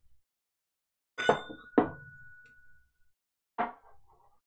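Glass tasting glasses clinking twice, about half a second apart. The first clink leaves a clear ringing tone that fades over nearly two seconds. A short, duller knock follows near the end.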